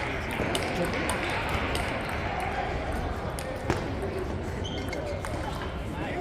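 Irregular sharp clicks of table tennis balls striking tables and paddles in a large hall, one louder click about midway, over background voices.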